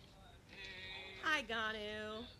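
A voice on the recorded fansign video-call audio, played back quietly. About a second in it rises into one long drawn-out vowel.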